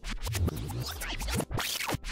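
Glitchy electronic transition sound effect: record-scratch-like noise with quick sweeping pitches, briefly cutting out once about a second and a half in.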